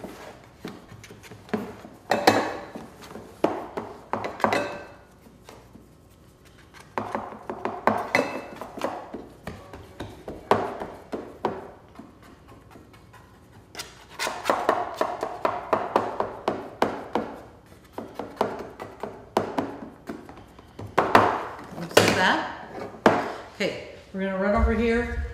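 Hands pressing a buttery cake-mix crust into a metal baking pan: irregular bursts of dull thuds and scrapes, with quieter pauses between them.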